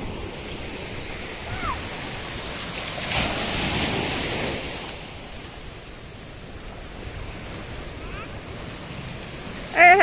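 Sea surf washing against a rocky shore, a steady rushing that swells louder for a second or so about three seconds in. Children's voices are faint in the distance.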